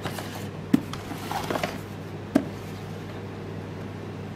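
Cardboard product boxes handled on a wooden desk: two sharp knocks about a second and a half apart, with some rustling between them, over a steady low hum.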